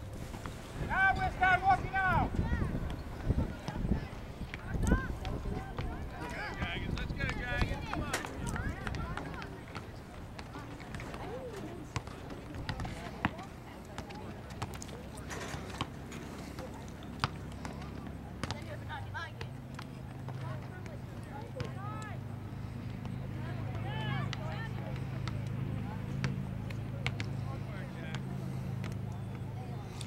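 Distant shouts and calls from players and spectators across an open soccer field, loudest near the start, with scattered short knocks. A low steady hum comes in about two-thirds of the way through.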